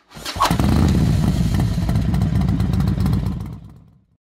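Motorcycle engine starting up and running with a loud, rapid firing beat, fading out over the last second.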